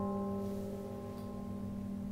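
A steady, unchanging hum made of several fixed tones held at one level throughout.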